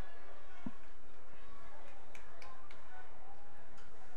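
Soccer field ambience: faint distant players' voices and a few light taps over a steady low rumble.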